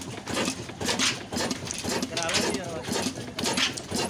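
Men talking over a large horizontal single-cylinder 'Super Modern' oil engine with twin spoked flywheels running, with knocks heard beneath the voices.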